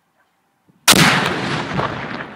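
Controlled demolition of an old hand grenade with an explosive charge: one loud blast about a second in, trailing off into a long rumble that slowly fades.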